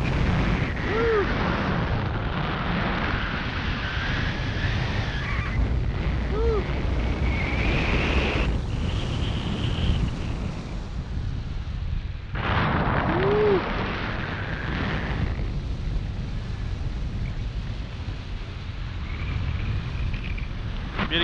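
Wind from a tandem paraglider's flight rushing and buffeting over the camera's microphone: a steady rumbling hiss, briefly quieter about twelve seconds in.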